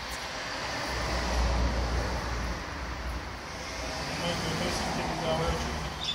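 Road traffic noise: a steady hum with a low rumble that swells about a second in and fades again, with faint voices near the end.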